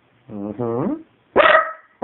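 A corgi gives a low, drawn-out grumbling vocalization, then a single loud bark about one and a half seconds in.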